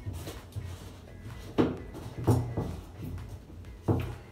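Three sharp knocks and clunks, in the second half, of a filled plastic blender cup being handled and fitted against the blender base and countertop. The blender motor is not running.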